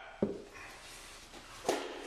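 A small steel tool being handled and set down upright on a wooden workbench: two short knocks, a light one just after the start and a sharper one near the end, over quiet room tone.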